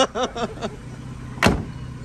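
Car door of a 1949 Austin A40 slammed shut once, about one and a half seconds in, with a low steady engine hum underneath.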